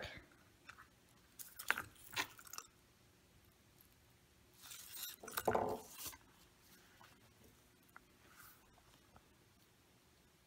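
Garlic cloves crackling inside a silicone garlic-peeler tube as it is rolled by hand on a plastic cutting board, the papery skins crunching loose. It comes in a few short bursts, with a longer one about halfway through.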